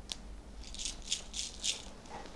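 A handful of cowrie shells shaken in cupped hands for divination: one click, then four quick rattles in about a second.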